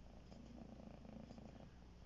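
Near silence: faint low background noise with a weak, slightly fluttering low hum.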